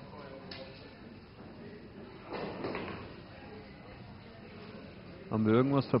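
Quiet room tone of a large hall with faint voices in the background. Near the end a man's voice speaks clearly and loudly.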